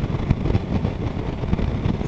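Wind rushing over the microphone of a moving motorcycle, with the Triumph Tiger 800 XRx's three-cylinder engine running underneath at road speed.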